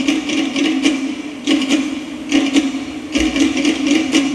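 Live Hawaiian band music in a sparse passage: a steady held low note with light, irregular rattling percussion clicks a few times a second, and no drums or bass.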